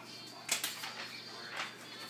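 A few faint, brief rustles and handling knocks, like someone rummaging among plastic bags and items on a table.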